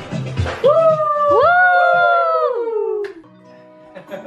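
Two voices calling out long drawn-out cheers that overlap, each rising steeply, holding and sliding down, over background music.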